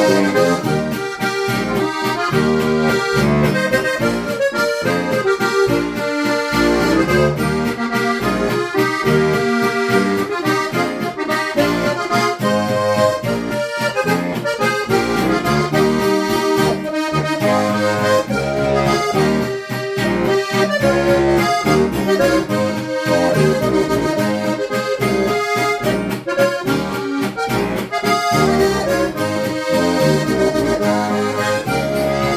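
A Lanzinger diatonic button accordion (Steirische Harmonika) playing a traditional tune: a melody in several voices over a steady beat of bass and chord buttons, without a break.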